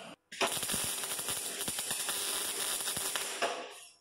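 Wire-feed welder arc crackling steadily for about three seconds while a bracket is being welded, then stopping shortly before the end.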